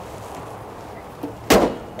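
The aluminium hood of a 2017 Ford F-150 pickup pulled down and slammed shut, a single loud bang about one and a half seconds in with a short ring after it.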